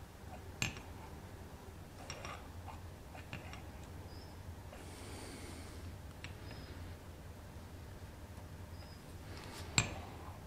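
Light metallic clicks and taps of thin steel strips against a stack of brass and copper sheets and the metal jig holding them as the layers are squared up, with two sharper clicks, one just after the start and one just before the end, over a low steady hum.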